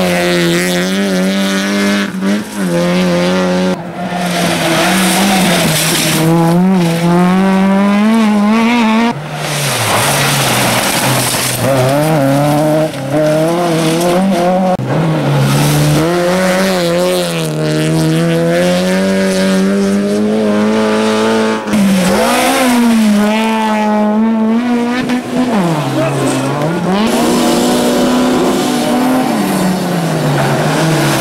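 Rally cars at full throttle on a gravel stage, one after another. The engines rev high, their pitch climbing through the gears and dropping sharply on shifts and lifts, over the hiss of tyres on loose gravel.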